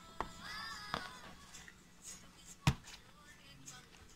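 A song with a singing voice plays quietly in the background, its melody dropping away about a second in. Papers rustle with a few light clicks, and one sharp knock comes a little under three seconds in.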